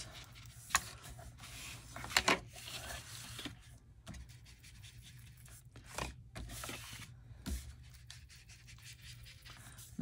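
Foam ink-blending tool rubbing Distress Oxide ink onto the edges of cardstock: soft, scratchy rubbing strokes, broken by a few light knocks and clicks, the sharpest about a second and two seconds in and a small cluster around six seconds.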